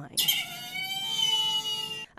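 A high-pitched squealing whine with several tones at once, starting suddenly and sagging slightly in pitch before stopping. It comes as a red-hot glow wire presses into a plastic phone charger casing during a flammability test.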